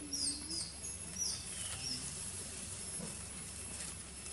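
Forest ambience: several short, high, sliding chirps in the first second and a half, over a steady thin high drone of insects.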